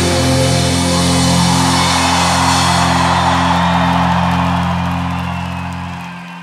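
Rock band's final chord held and ringing out after the last drum hits, with crowd noise underneath; it fades away over the last couple of seconds.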